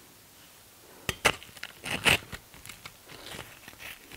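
Crisp tortilla chips crackling and snapping as a chip is pulled and broken from a loaded plate of nachos. The irregular crackles start about a second in and are loudest around two seconds in.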